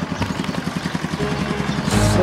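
Motorcycle engine idling with a rapid, even beat.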